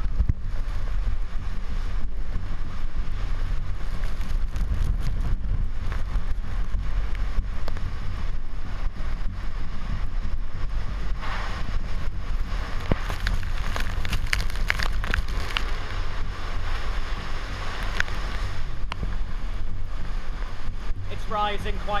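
Typhoon-force wind blowing hard and buffeting the microphone in a steady heavy rumble, with rain and storm-surge floodwater. Faint voices come through about halfway through.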